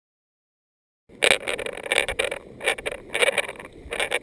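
Tall meadow grass swishing and rustling against the body and a body-mounted camera as someone wades through it, in irregular loud bursts starting about a second in.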